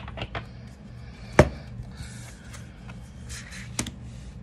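Oracle cards being handled on a wooden table: a few light taps at first, a sharp tap about a second and a half in, the loudest sound, another near the end, and soft sliding of the cards in between.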